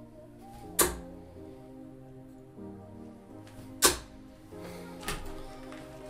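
Two steel-tip darts hitting a bristle dartboard with sharp thuds about three seconds apart, then a fainter knock near the end, over background music.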